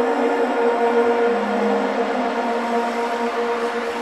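Instrumental passage of the song: sustained synthesizer chords, with a hissing swell that builds toward the end.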